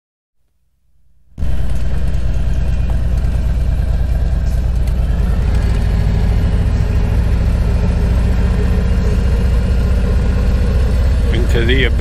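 Harley-Davidson Ultra Classic's 107 cubic inch Milwaukee-Eight V-twin running with a steady low rumble, coming in about a second and a half in.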